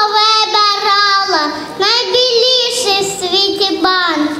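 A young girl singing into a microphone, holding long, steady notes, with a short pause about one and a half seconds in.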